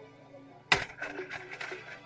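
A spatula scraping and clattering in a frying pan as food is stirred: one sharp clack less than a second in, then irregular scrapes and clicks, over quiet background music.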